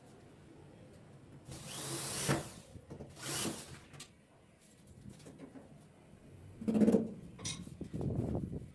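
Power drill driving screws into a wooden wardrobe door in two short runs, about one and a half and three seconds in. A sharp knock follows near the end.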